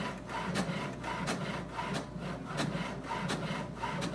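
HP Smart Tank 520 inkjet printer printing a copy: the print carriage shuttles back and forth in a steady repeating rhythm of a few strokes a second as the page feeds out.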